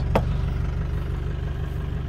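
Minibus engine idling steadily, a low even pulsing, with a brief click just after the start.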